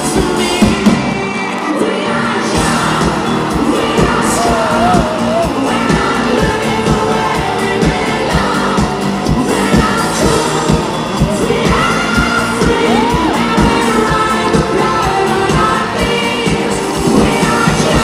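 A live pop-rock band playing with a steady drum beat and bass guitar under a male lead singer, with the concert crowd cheering and singing along, heard from among the audience.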